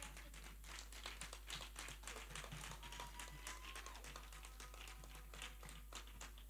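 Faint, scattered audience clapping: a quick, irregular patter of claps.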